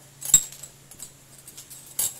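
Steel clutch plates for a Kawasaki KLX 150 clinking against each other and the clutch pack as one is fitted: one sharp metallic clink about a third of a second in, then a fainter click about a second in.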